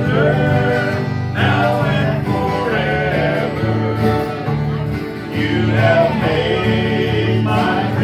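A live bluegrass gospel band playing acoustic guitars and other plucked strings over a steady bass line, with voices singing.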